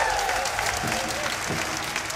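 Live concert audience applauding right after a rock song ends, many hands clapping together, with some voices calling out from the crowd.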